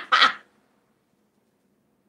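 The last burst of a woman's laughter, cutting off about half a second in, followed by complete silence.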